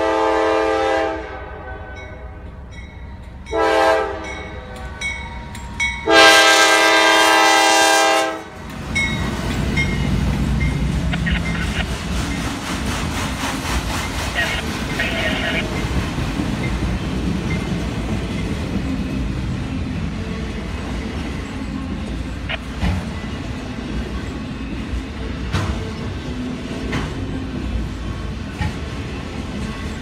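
Freight locomotive air horn sounding three chord blasts: one at the start, a short one about 3.5 s in, then the longest and loudest from about 6 to 8.5 s. After that the freight train rolls past with a steady low rumble and a scatter of clicks from the wheels over the rail.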